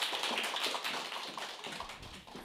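Audience applauding, dying away gradually.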